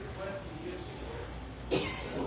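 Indistinct chatter of several people talking at tables, with one sudden loud cough near the end.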